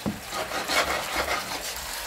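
Hot frying pan crackling and sizzling as wet linguine is dropped in with tongs straight from the pasta pot, with irregular scraping from the tongs.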